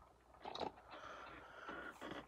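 Faint handling sounds as a small die-cast model car is set down by hand on a plastic display turntable, with a few light contact sounds about half a second in.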